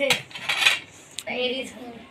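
Metal spoons clinking and scraping against plates and bowls at a meal: a few sharp clinks and a short scrape.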